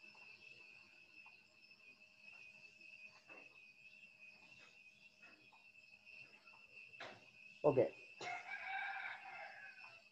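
A rooster crowing once, a pitched call lasting about two seconds near the end, over a steady high insect drone of crickets.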